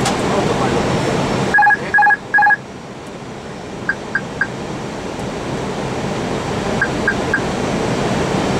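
Airbus cockpit aural alert on approach: three short, even electronic beeps about a second and a half in, then two fainter sets of three quick pips around four and seven seconds. They sound over steady cockpit air and engine noise, which drops sharply just before the first beeps.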